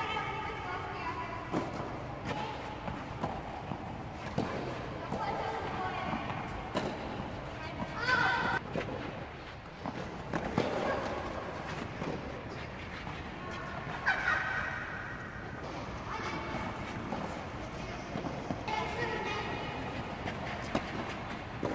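Tennis balls struck by rackets at irregular intervals during children's rallies on a clay court, mixed with children's high-pitched calls and chatter.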